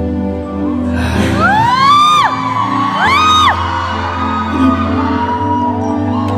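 Live concert music in a large hall, with sustained low notes held under it, and audience members shrieking in high rising-and-falling screams: a long one about a second in, another around three seconds in, and shorter ones near the end.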